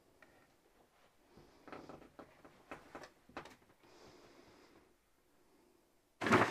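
Near silence: quiet room tone with a few faint clicks and knocks about two to three and a half seconds in.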